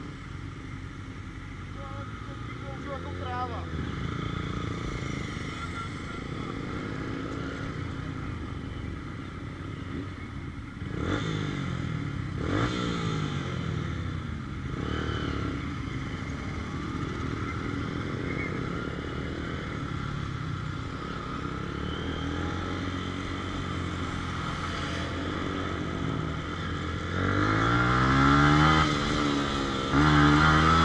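Motorcycle engines idling and being revved in short rising-and-falling sweeps. Near the end one engine accelerates hard and louder as the bike pulls away.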